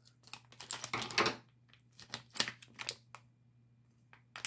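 Plastic foil minifigure blind bag crinkling in the hands as it is handled and pulled open: a run of short, irregular crackles and clicks that stops about three seconds in.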